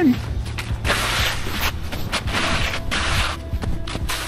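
Footsteps crunching and creaking on packed snow and wet slush, in an uneven series of short scrunches.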